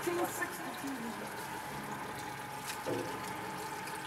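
Water lapping and trickling softly against the hull of a small boat on a calm sea, steady and quiet.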